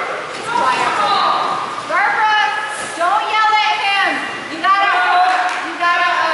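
A dog's high-pitched yelping cries: four or five drawn-out calls, several rising in pitch as they begin.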